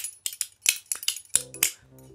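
Metal spoons tapped together, making a quick, uneven run of about a dozen sharp clicks.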